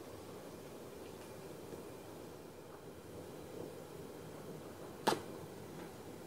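A man puffing quietly on a cigar: faint steady draw and breath noise, with one short pop about five seconds in.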